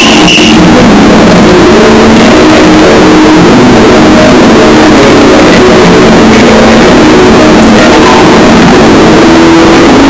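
Cartoon intro soundtrack pushed to full volume and heavily distorted: held low notes that change pitch in steps, buried under a constant harsh hiss, clipped throughout.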